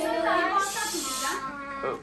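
Voices in a small room, with a short breathy hiss starting about half a second in and lasting under a second.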